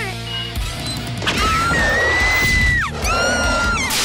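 Cartoon soundtrack: music with crashing sound effects and a long, high held cry in the middle, swooping up into it and down out of it.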